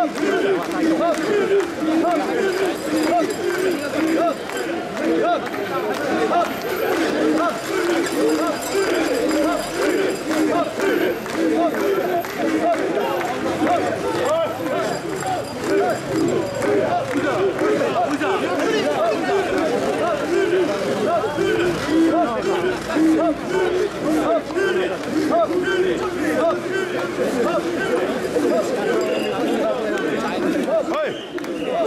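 A crowd of mikoshi bearers chanting together in a steady, repeating rhythm as they shoulder the portable shrine, many men's voices overlapping.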